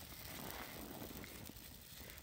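Bundle of dry reeds burning in the hand, crackling faintly with small irregular pops.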